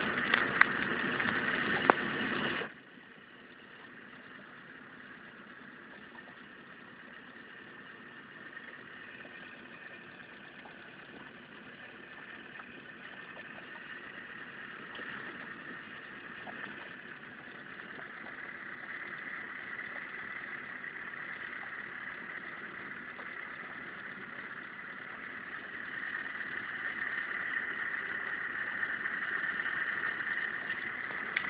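Small outboard motor running steadily at low trolling speed, heard from aboard the boat. A louder, rougher noise for the first two and a half seconds drops away suddenly, then the steady motor hum slowly grows louder.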